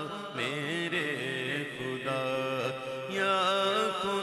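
A man's voice singing an Urdu hamd unaccompanied in the naat style, in long, ornamented, wavering phrases, over a steady low drone.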